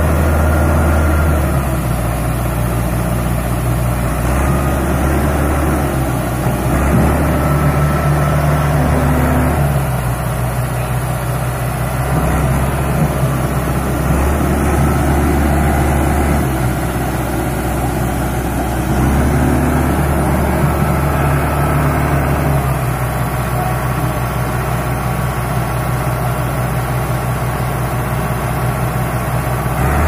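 A Mahindra 605 DI tractor's diesel engine runs under load as it hauls a trailer through loose soil. The engine speed rises and falls several times.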